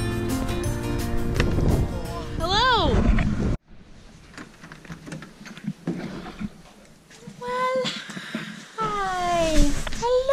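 Background music with held notes, cut off abruptly a few seconds in. After a few quiet knocks, a dog whines in short, high cries that fall in pitch near the end as it greets at the door.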